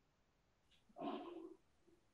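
Near silence between speakers, with one faint, short murmur about a second in.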